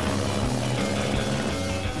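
Helicopter rotor beating over steady engine noise, with dramatic background music laid over it.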